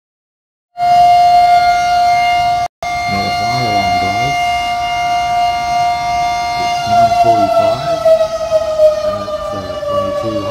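Civil-defence-style outdoor siren sounding the nightly curfew for minors: one steady tone starts about a second in, drops out briefly, and from about seven seconds in slowly falls in pitch as it winds down.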